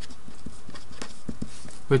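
Pen writing: irregular light taps and short scratches on the writing surface, over a steady background hiss.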